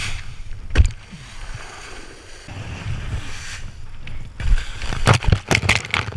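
Wind buffeting a head-mounted action camera and water rushing and spraying under a kiteboard planing over flat water. There is a loud thud about a second in, and a run of sharp slaps and splashes over the last second and a half.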